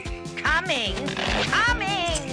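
A cartoon pig's wordless voice oinking and squealing over background music: one gliding call about half a second in, then a wavering one near the end.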